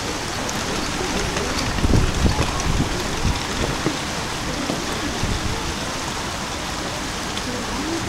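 Water rushing steadily down a concrete river channel and over a small step in its bed. A few low bumps stand out about two to three seconds in.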